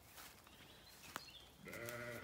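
A sheep bleating once near the end, a low, wavering call, preceded by a single sharp click about a second in.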